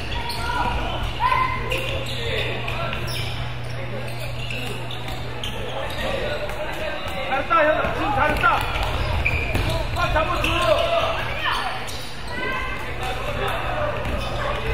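A basketball bouncing repeatedly on a hardwood gym floor as players dribble, with voices calling out in an echoing gymnasium. A steady low hum runs underneath.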